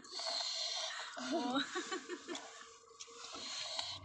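Young child's voice making quick, brief syllable-like sounds, a short run of them between about one and two seconds in.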